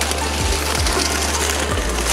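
Paraglider wing fabric and grass rustling steadily as the wing is handled and dragged through reeds, over a steady low hum.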